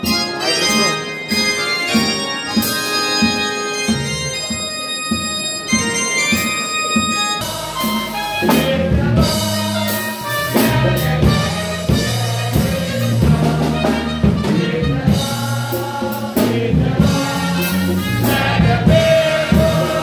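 Live gospel music: a keyboard plays held chords, then about seven seconds in a drum kit and bass come in with a steady beat. The congregation sings along with the song.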